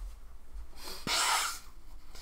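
A man blowing his nose into a tissue: one noisy blast just under a second long, starting a little before the middle.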